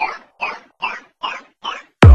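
Psytrance breakdown with the kick and bass dropped out: a short synth stab repeats on the beat, about two and a half a second, each one sweeping down in pitch.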